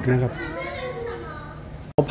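Children playing and calling out in an indoor water park. The sound cuts off suddenly just before the end.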